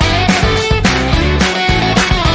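Background music: a guitar-led track with a steady beat.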